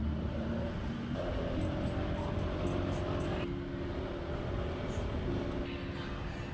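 Motorbike engine and road noise during a ride, with rumble and wind. Music with held notes that change every second or so plays over it.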